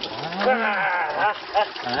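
A man groaning long and low at the shock of cold mountain-stream water poured over his bare back and head, then a couple of shorter grunts, with water splashing off him.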